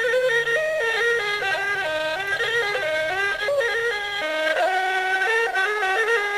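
Traditional music: a single wind instrument playing a continuous, ornamented melody that steps quickly up and down in pitch.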